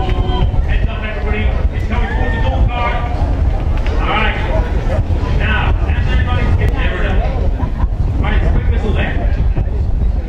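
Indistinct talking, with voices coming and going throughout, over a steady low rumble.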